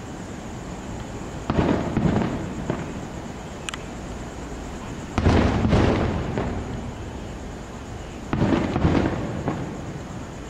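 Aerial fireworks shells bursting: three booms, each followed by a second bang about half a second later, then fading over a second or so.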